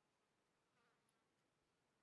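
Near silence: faint room tone.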